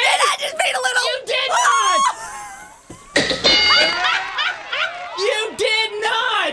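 People's voices: excited, unclear talk and laughter, with a short lull a little after two seconds in.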